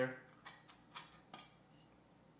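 A glass jar with a metal screw lid being handled, giving a few light clicks and taps spread over a second or so.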